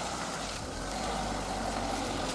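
Steady street noise of vehicles, a low engine rumble under an even hiss of traffic.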